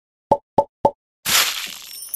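Animation sound effects: three quick cartoon plops about a quarter second apart, then a splashy splat that fades away.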